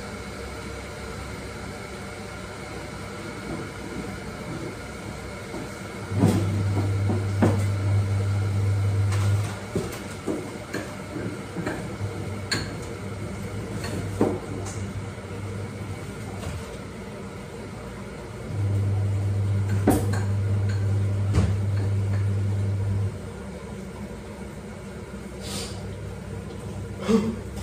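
A kitchen appliance hums steadily, switching on for a few seconds, dropping to a fainter run, then running again for several seconds, with scattered clicks and clinks of kitchenware around it.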